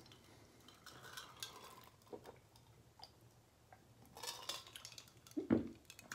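A person drinking fizzy orange from a glass: faint gulps and a few small clicks, then a burp about five and a half seconds in.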